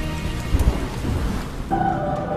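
A rushing noise with a low rumble and thumps about half a second in, after the waltz music stops; new music comes in near the end.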